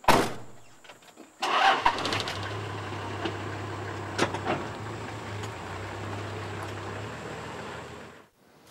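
A vehicle door slams shut, then about a second and a half later the four-wheel-drive's engine cranks, catches and settles into a steady idle.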